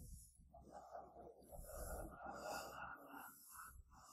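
Near silence: faint breath-like noise and soft rustle close to a lecture microphone.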